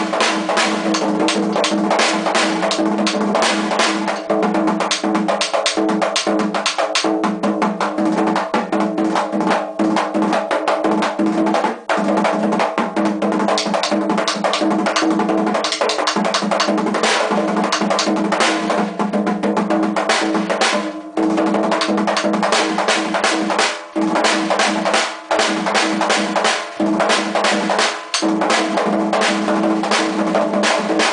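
Dominican tambora, a newly built two-headed drum being played for the first time, beaten with rapid continuous strokes in the merengue típico style, its heads ringing with a steady low pitch. The rhythm pauses for a split second a few times, mostly in the last third.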